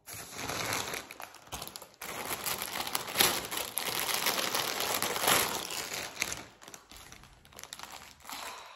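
Clear plastic bag crinkling and crackling as hands open it and rummage inside, a busy run of crackles that dies down about six seconds in.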